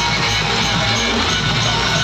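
Loud DJ music played through a truck-mounted sound system, heard at close range at a steady level.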